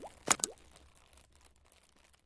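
Two quick pop sound effects with a rising pitch, about a third of a second apart, from an animated logo intro, then fading away.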